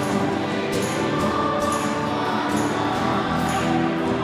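A church choir singing a closing hymn with instrumental accompaniment, with a light high-pitched beat about once a second.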